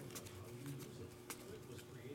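Trading cards being slid off a stack from hand to hand, making faint clicks, the sharpest about a second and a quarter in, over a low steady hum.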